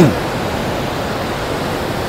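Kunhar River's fast current rushing over and between boulders: a steady, even rush of white water.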